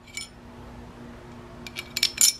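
Laser-cut metal grappling-hook plates and a bolt clinking against each other as the bolt is pushed through the stacked hammers. There is one ringing clink just after the start and a few more clinks near the end.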